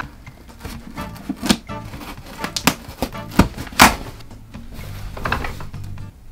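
A knife cutting through packing tape and cardboard box flaps being pulled open: a run of sharp clicks, scrapes and knocks, the loudest about halfway through. An office chair squeaks under the shifting weight.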